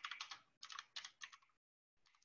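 Computer keyboard typing: a quick run of keystrokes in short bursts for about a second and a half, then it stops.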